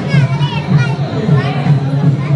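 Chatter of a crowd gathered in a hall, with a child's high voice rising and falling in the first second.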